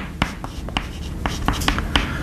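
Chalk on a chalkboard as words are written: an irregular run of sharp taps and short scratches, about ten in two seconds.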